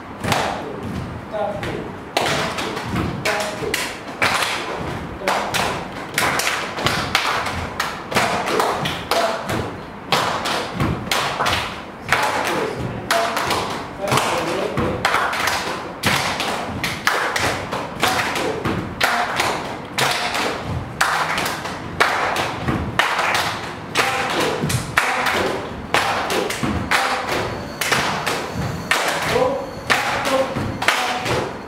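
A group doing body percussion together: hand claps and bare feet stamping on the floor in a rhythmic pattern, a steady run of sharp strikes with no break.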